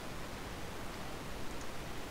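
Steady, even background hiss with no distinct sound in it: the open microphone's noise floor between words.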